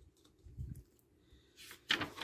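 A page of a paper fanzine being turned by hand: light handling, then a brief swish of paper near the end.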